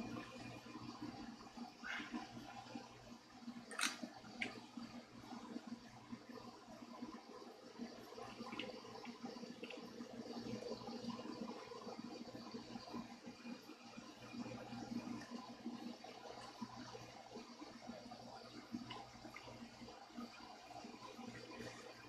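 Cloth polishing rag rubbing over a solid-body electric guitar's finish, a faint steady swishing, with a light click about two seconds in and a sharper tap about four seconds in. A low steady hum runs underneath.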